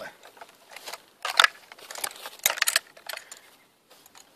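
Norinco M14 (M305) rifle being swung and handled by hand: short metallic clinks and rattles from its fittings, in a few separate bursts about a second apart.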